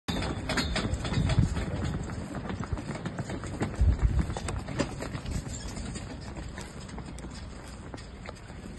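Donkeys' hooves clip-clopping on a paved road as they pull a wooden cart, a steady run of short knocks. A low rumble underneath swells about a second in and again about four seconds in.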